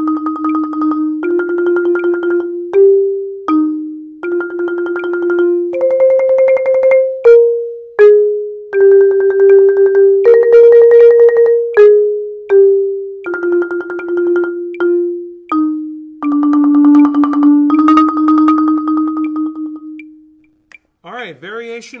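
Marimba played with two yarn mallets: a slow melody of rolled notes, each roll held a second or two and moving mostly stepwise in the middle register. It ends on a long low roll that dies away near the end.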